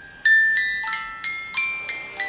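A small music box in a glass case playing a melody: a run of single plucked notes from its metal comb, each ringing and fading.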